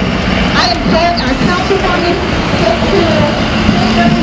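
A large truck's engine running as it drives past close by, heard under voices from a street loudspeaker.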